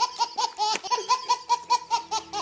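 Baby laughing hard: a rapid string of short, high laugh bursts, about five or six a second, with one longer squeal just under a second in.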